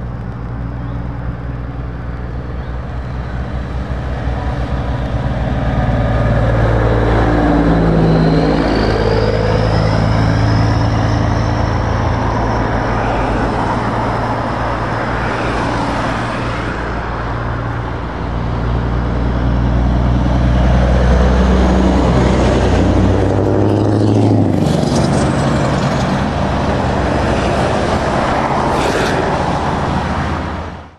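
Heavy trucks and cars passing by on a wet road: a low diesel engine drone with tyre noise that builds as each vehicle nears. There are two loud pass-bys, about eight seconds in and again around twenty-two seconds.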